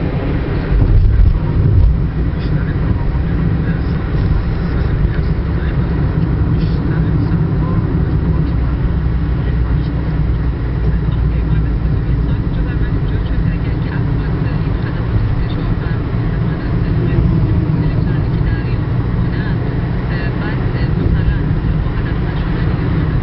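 Car-interior road and engine noise while driving at highway speed: a loud, steady low rumble, with a louder thump about a second in.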